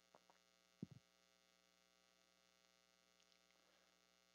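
Near silence: a faint steady electrical hum on the recording's audio line, with a brief faint tick just under a second in.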